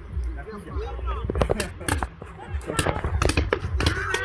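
Paintball markers firing, an irregular string of sharp pops, several close together in places.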